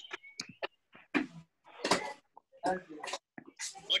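Men laughing in short, scattered bursts over a video call, with brief gaps between them.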